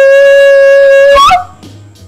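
Jingle music ending on one long, loud held wind-instrument note that bends sharply upward and cuts off just past a second in.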